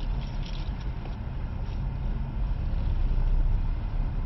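Car engine and road noise heard from inside the cabin as the car pulls forward, a steady low rumble that grows a little louder as it picks up speed.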